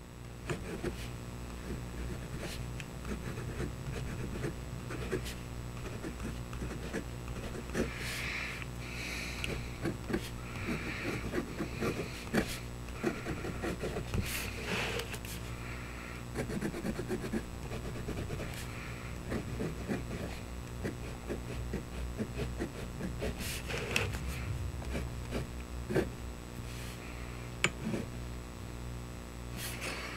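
Fine steel nib of a fountain pen scratching lightly across paper as it writes letters and test strokes, over a steady low hum, with a few light clicks. The pen is writing with its blind cap shut, so the ink flow is running dry.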